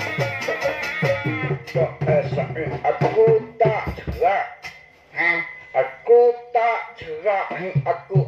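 Nang talung shadow-puppet ensemble music with repeated drum notes stops about one and a half seconds in. A puppeteer's voice follows in short phrases with wide swoops up and down in pitch, broken by brief pauses.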